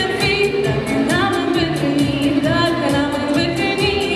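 A woman singing into a microphone with vibrato over amplified backing music with a steady beat.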